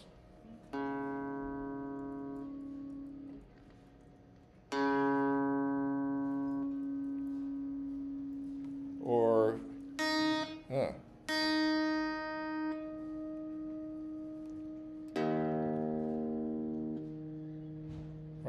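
A guitar string plucked about four times, each note ringing and fading over a few seconds. The string is struck and then lightly touched at its midpoint to damp the fundamental and bring out the octave harmonic. Between nine and eleven seconds in there are brief sliding, gliding pitch sounds.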